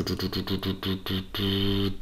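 A man's voice making wordless hesitation sounds: a run of short, clipped vocal noises, then a held "mm" hum starting about a second and a half in.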